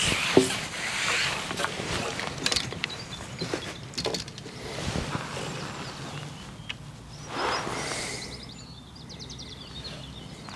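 Rustling and handling noises with a few small knocks as a freshly landed fish is taken out of a landing net and unhooked.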